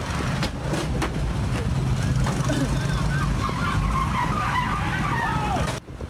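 Street traffic recorded on a phone: motorcycle and car engines running close by in a loud, noisy rumble, with people's voices rising over it in the middle. The sound cuts off abruptly near the end.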